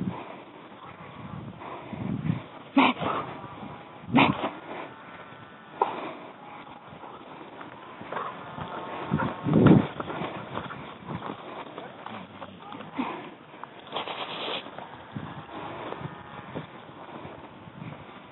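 Hog dogs barking and baying at a distance as they chase hogs, in scattered wavering calls. Two sharp knocks come about three and four seconds in.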